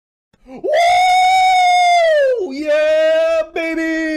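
A man's excited yell: a long, high-pitched "Whooo!" held for nearly two seconds, then a lower, drawn-out "yeah, baby!"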